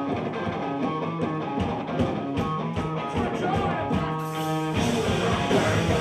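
Live hardcore/southern-rock band starting a song: an electric guitar riff punctuated by drum hits. About four and a half seconds in, the full band comes in with crashing cymbals.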